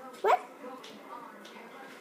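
A single short, sharp yelp that rises in pitch, about a quarter second in.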